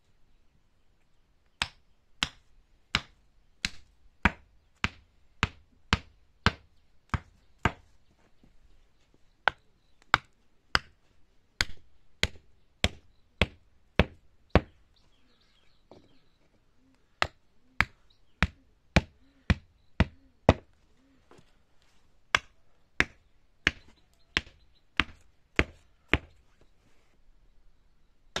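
A hammer driving small wooden stakes into garden soil beside a wooden edging board. Sharp, evenly paced knocks come about one and a half a second, in four runs of six to ten strikes with short pauses between them.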